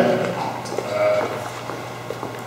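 A man's voice at a microphone making short drawn-out hesitation sounds, the clearest about a second in, over a steady low hum.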